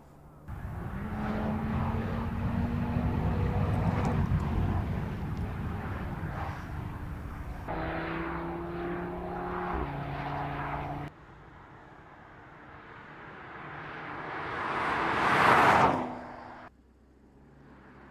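Audi TT RS's five-cylinder turbocharged engine in a series of short driving shots: first pulling hard with a rising note, then running at a steadier pitch, then a pass-by that swells to a peak and falls away quickly.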